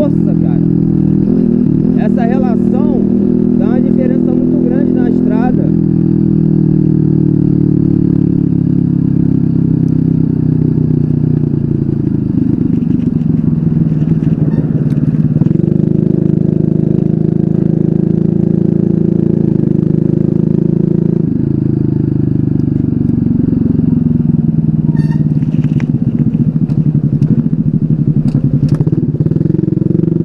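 TopTrail TopLet four-stroke moped engine running under way, its pitch dropping and rising a few times as engine speed changes with the throttle. It has a newly fitted chain tensioner, which the owner says takes away the chain noise.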